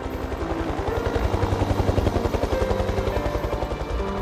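Rapid, even low thudding of a machine, several beats a second, growing louder toward the middle and then easing off, with faint music beneath.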